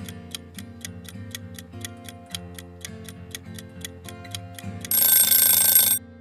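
Quiz countdown-timer sound effect: a clock ticking rapidly and evenly over soft background music, then about five seconds in a loud ringing alarm goes off for about a second, signalling that time is up.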